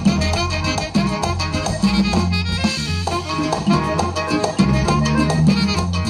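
Live band with accordion playing a dance tune, accordion melody over a steady bass line and drums.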